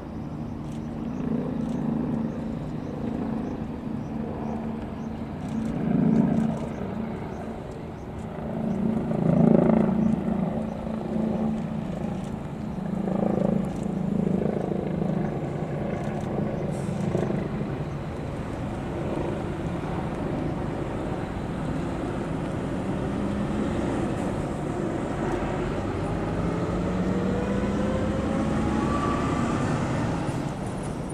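Toyota Crown police patrol cars driving slowly past, a low engine and tyre hum that swells several times as cars go by. Over the last several seconds a rising engine note as a car speeds up.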